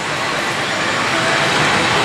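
Steady, even din of a pachinko and pachislot hall: the sounds of many machines blended into one continuous noise.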